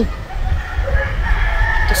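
A rooster crowing once, one long drawn-out call starting about half a second in.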